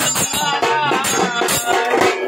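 A Marathi devotional song to Khandoba sung live, the voice carried over a rattling hand percussion that keeps a steady, fast beat.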